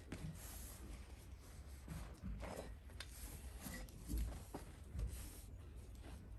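Faint rustling and soft taps as upholstery fabric and a cloth tape measure are handled.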